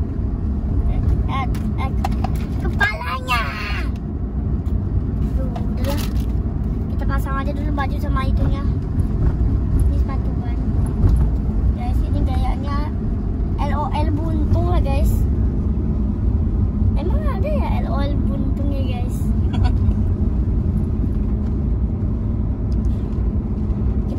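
Steady low rumble of car cabin noise from a car on the move, with a child's voice speaking softly now and then. A couple of short, sharp clicks come in, around a quarter of the way in and again past the middle.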